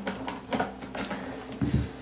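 A flat-bladed screwdriver working the fastener of a Honda EU2000i generator's plastic side access panel, with a few light clicks, then a dull thump near the end as the panel comes free.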